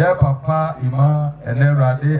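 A man's voice through a microphone, reciting in a chant-like cadence over sustained low keyboard notes, typical of a hymn's lines being read out to the congregation.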